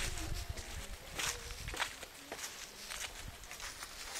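Footsteps on grass strewn with dry fallen leaves: several steps about half a second apart, each with a light crackle of leaves.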